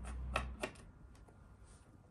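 Small metal screws and a small screwdriver clicking as the screws are taken out of a hard drive's cover: three sharp clicks in the first second, then a few faint ticks.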